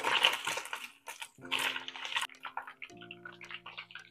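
Chicken skin frying in a pan of hot oil, the oil sizzling in irregular bursts as tongs stir the pieces and lift them out.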